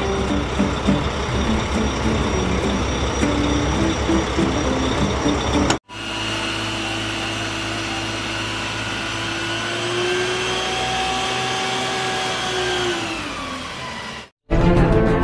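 Two stretches of large-truck sound cut together. First an uneven, noisy engine sound. Then, after a short break about six seconds in, a steady drone from a water tanker truck's engine and water-cannon pump that rises slightly in pitch and then sags away near the end.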